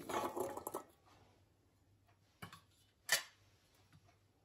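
Diced carrots tipped from a small steel bowl into a stainless-steel pot, a short clatter in the first second, then two sharp metal clinks a little over half a second apart near the end.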